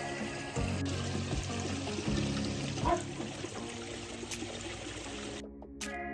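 Background music over the steady trickle and splash of water from a garden pond. The water sound cuts off suddenly about five seconds in, and the music carries on alone.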